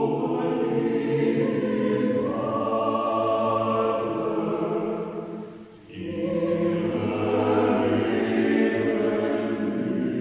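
A mixed choir singing held chords in a chapel, with a brief break between phrases a little past the middle before the voices come back in.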